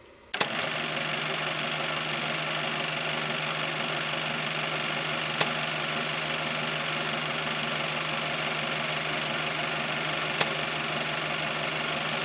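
A steady machine-like running hum with hiss that starts with a click just after the start, broken by two sharp clicks about five seconds apart.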